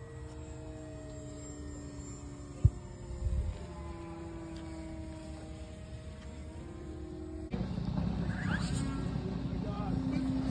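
Remote-control model airplane's motor and propeller droning in flight overhead, its pitch drifting slowly as it flies, with one sharp click a little under three seconds in. Near the end the sound changes abruptly to a louder low rumble of noise.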